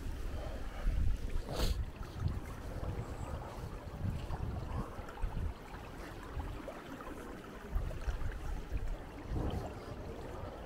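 Wind buffeting the microphone in uneven gusts of low rumble, over faint street ambience, with one short sharp click about one and a half seconds in.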